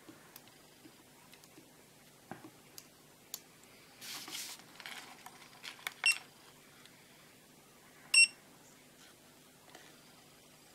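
FNIRSI LCR-P1 component tester beeping as its buttons are pressed: a short beep about six seconds in and a louder, slightly longer beep about two seconds later. Earlier, faint rustling and small clicks come from the test leads and the tester being handled.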